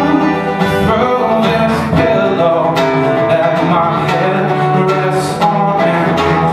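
Steel-string acoustic guitar strummed, chords ringing with repeated sharp strokes in an instrumental passage of the song.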